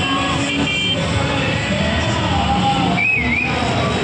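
Busy street din of motor traffic and a crowd, with music playing over it.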